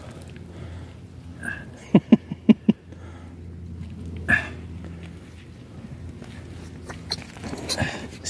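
A dog giving four quick yips in a row about two seconds in and one more near the middle, over the low scuffle of a hand digging into a sandy rabbit hole.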